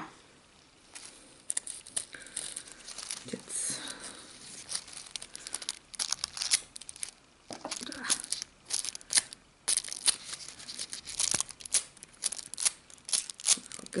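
Thin nail-art transfer foil crinkling and crackling as it is pressed and rubbed onto glued artificial nail tips and peeled away: a quick, irregular run of small crackles starting about a second in.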